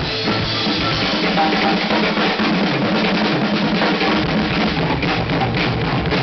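Acoustic drum kit played hard in a rock beat, with bass drum and cymbal hits, over a recorded rock band track with guitar.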